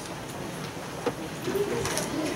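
Soft, indistinct voices murmuring, with a light knock about a second in and another near the end.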